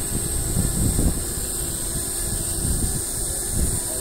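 Wind buffeting the microphone in uneven low rumbling gusts, over a faint steady hum from the Hubsan Zino Mini Pro quadcopter's propellers as it hovers a couple of metres away.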